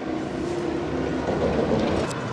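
City bus driving past close by, its engine hum and road noise growing loudest near the end, with the engine tone dropping in pitch as it goes by.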